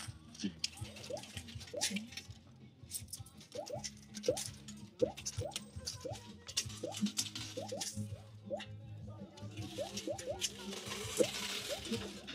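Electronic arcade music and short rising chirps from coin-operated funfair machines, over a steady low hum, with frequent sharp clicks and clinks of coins in a coin pusher machine.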